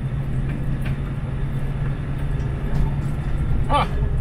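Steady drone of a semi-truck's diesel engine and tyre and road noise heard inside the cab at highway speed, the tractor running without a trailer. A brief vocal sound comes from the driver near the end.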